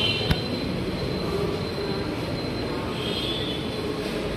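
Steady mechanical noise with faint high squealing tones that come and go, and a single sharp click about a third of a second in.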